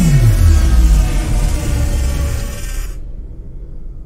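Background music with a falling swoosh sound effect at the start and a low rumble under it, as a cartoon vehicle comes down to land. All of it fades out about three seconds in.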